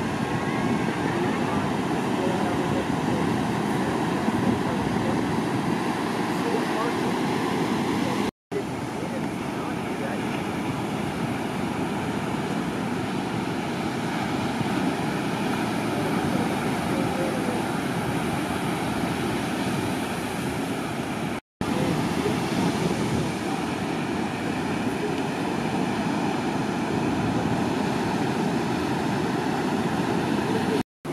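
Steady rush of breaking ocean surf, cut off for an instant twice, about a third and two thirds of the way through.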